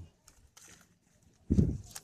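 Faint rustling and small clicks of leaves and palm fronds being handled. About one and a half seconds in there is a single short, loud, low thump.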